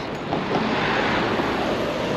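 Steady rushing wind on the microphone with road noise from a Brompton folding bicycle riding along.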